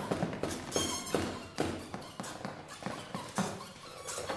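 Free improvised music from a trumpet, prepared guitar and percussion trio: sparse, irregular taps and knocks mixed with short pitched squeaks and chirps, with no steady beat.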